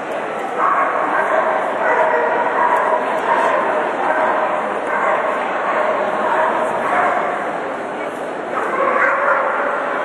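A dog barking repeatedly as it runs an agility course, over a steady wash of arena crowd noise and voices.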